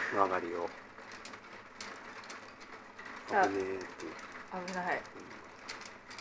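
Three short wordless voice sounds, at the start, about three seconds in and near five seconds, against faint light clicks of plastic mahjong tiles being handled on the table.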